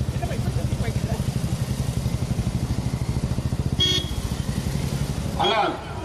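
A vehicle engine idling close by, with a fast, even low throb that stops about five and a half seconds in.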